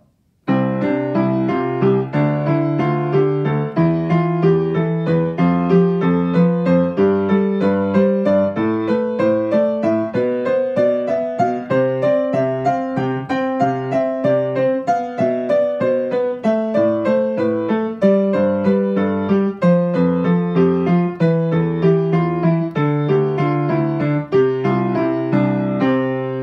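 Piano playing a five-finger exercise: right-hand white-key pentascales over left-hand octaves broken into groups of five notes. It begins about half a second in, climbs one white key at a time to a peak around the middle, then steps back down.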